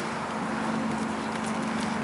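Hoofbeats of a ridden Thoroughbred horse moving across grass, over a steady low hum.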